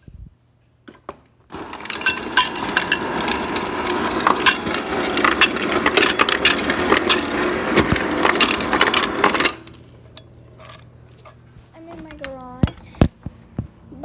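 A mug and kitchenware clinking and clattering loudly for about eight seconds, starting a second and a half in. Two sharp knocks follow near the end.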